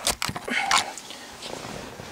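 Handling noise of a handheld camera being set down: a few sharp knocks at the start, then a brief rustle about half a second in, settling to a low hiss.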